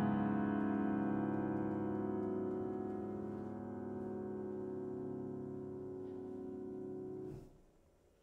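Grand piano chord held on the sustain pedal, ringing out and slowly fading, then damped off abruptly near the end.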